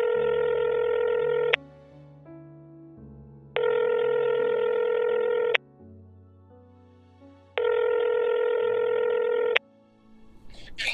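Telephone ringback tone, heard on the caller's end while the call waits to be answered: a steady buzzing beep that sounds for about two seconds and pauses for two, three times. Soft background music plays underneath.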